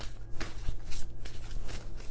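Tarot cards being shuffled by hand: a series of short, papery swishes and flicks of the deck. A steady low hum runs underneath.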